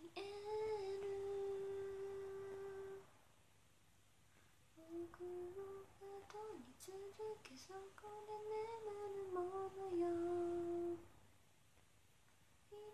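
A young woman humming a melody with no accompaniment. She holds one long note for about three seconds, pauses, then hums a phrase of shorter stepped notes for about six seconds.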